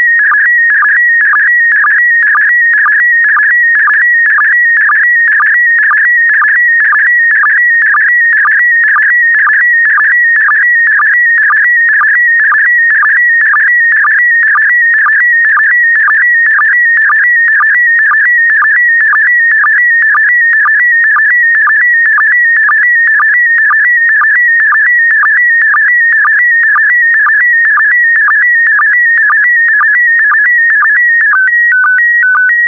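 Slow-scan television signal in PD120 mode, mid-transmission: a loud, high, nearly steady tone broken by short dips about twice a second as the picture's scan lines are sent.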